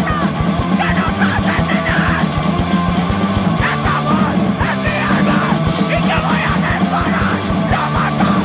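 Fast, loud hardcore punk music with yelled vocals over rapid, dense drumming.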